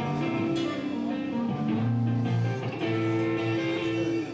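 A live rock band playing: electric guitars and bass over a drum kit, the guitar to the fore with sustained notes that change pitch.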